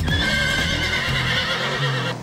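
Horse whinny sound effect, one long wavering call laid over background music, cutting off abruptly at the end.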